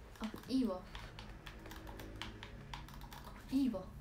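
Irregular clicking of keys being pressed, like typing, going on throughout, with two short vocal sounds, one about half a second in and one near the end.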